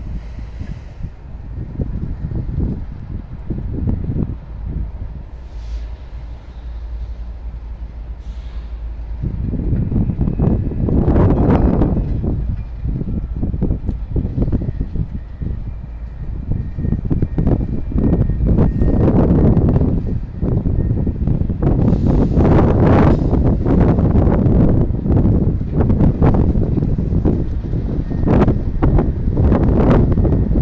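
Wind buffeting the microphone in irregular gusts that grow heavier about a third of the way in, over a distant freight train in the yard.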